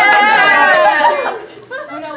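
Excited group chatter, led by one high, drawn-out voice calling out for about the first second, then quieter mixed voices.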